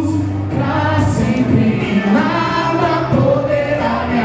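Gospel song sung live, voices over instrumental backing with a steady bass line.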